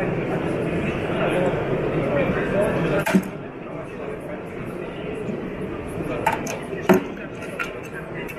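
A solid-fuel boiler's steel cleanout hatch cover is unscrewed and taken off: a sharp metallic clack about three seconds in, then a few lighter knocks. The chatter of a crowded hall runs under it.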